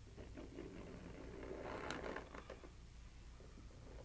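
Faint scraping and rustling of a small metal palette knife pressing and dragging thick acrylic paint across a canvas, with a few soft ticks.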